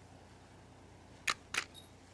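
Two sharp mechanical clicks about a third of a second apart, the second followed by a brief high metallic ring.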